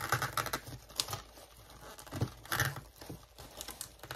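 Paper and plastic gift packaging rustling and crinkling as it is handled, with irregular light taps and clicks.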